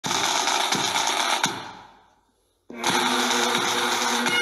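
Intro music: a harsh, buzzing passage with a beat fades out to near silence about two seconds in, then bagpipes start up about two and a half seconds in, drones sounding under the chanter, with a drum beat.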